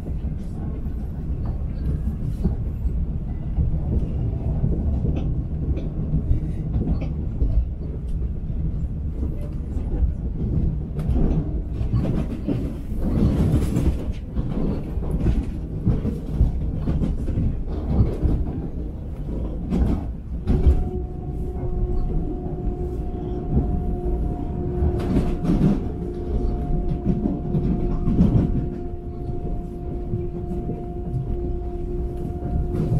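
Long Island Rail Road electric commuter train running at speed, heard from inside the passenger car: a steady low rumble with scattered clicks of the wheels over the rails. About two-thirds of the way through, a steady hum at two pitches joins in and holds.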